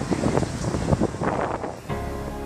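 Gusting wind noise buffeting the microphone, a rushing sound that rises and falls in irregular surges and cuts off just before the end.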